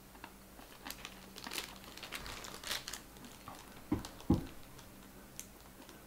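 Faint, irregular crunching and crackling as a hard, rock-like piece of edible clay is bitten and chewed, with two low thuds about four seconds in.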